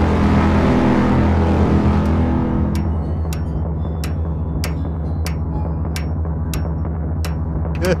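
Horror-trailer sound design: a deep, sustained low drone ringing on from a heavy impact, with sharp ticks starting about three seconds in and repeating roughly three times a second.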